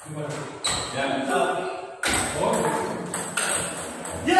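People talking in the background, with a few sharp clicks of a table tennis ball.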